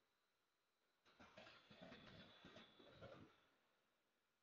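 Near silence: faint room tone, with a brief spell of faint, indistinct sound in the middle.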